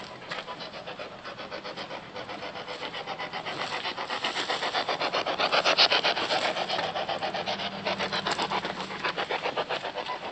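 Spirit box (ghost box) sweeping through radio stations: rapid, evenly chopped radio static, louder toward the middle and easing near the end.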